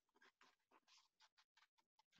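Near silence, with only faint short ticks.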